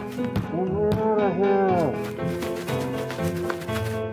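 Background orchestral music with a cartoon sheep's drawn-out, wavering bleat from about half a second in, its pitch rising and falling three times over more than a second.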